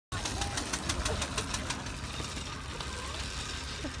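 1899 Star Benz's single-cylinder engine chugging with slow, evenly spaced beats, about six or seven a second, fading after the first couple of seconds as the car pulls away.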